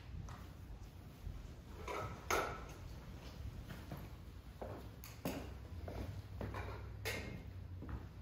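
A few scattered soft knocks and bumps over a low steady hum, the loudest about two seconds in.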